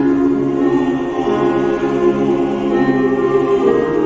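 Mixed chamber choir singing a cappella-style held chords in several parts, changing to a new chord near the end.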